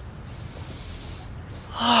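A yoga group breathing together: a faint, slow inhale, then near the end a loud, breathy exhale.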